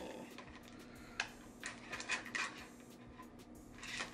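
Plastic clicks and rattles of a small fragrance diffuser being handled and fitted together: a sharp click about a second in, a quick run of clicks shortly after, and more near the end.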